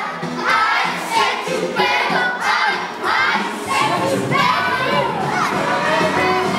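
A group of young children shouting and chanting together, their high voices coming in short repeated bursts.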